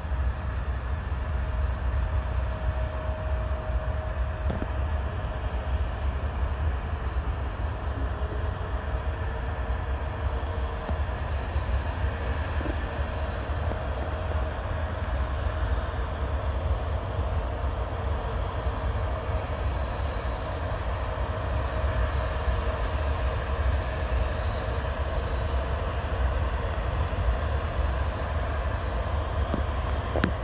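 Distant airliner jet engines running steadily across the airfield: a low rumble under a faint, steady whine.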